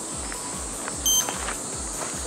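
Background music with a steady beat, and a short, high electronic beep sound effect about a second in.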